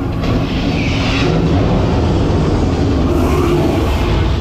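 Loud, steady rumble of a dark ride's show sound effects, a battle scene of fire and aircraft noise, with hissing swells about a second in and near the end.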